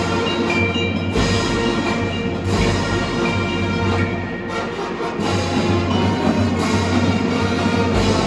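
Live marching show band playing: held chords over heavy drum strikes every second or two, with mallet percussion.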